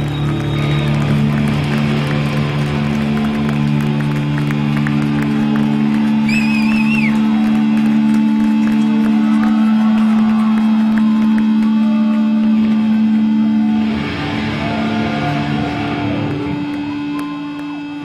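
Live rock band's electric guitars holding long, sustained droning notes. The level drops a little past the three-quarter mark and the sound then fades toward the end.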